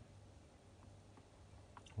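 Near silence: a faint steady low hum with a few soft clicks from a fridge's temperature control dial being turned, about a second in and near the end.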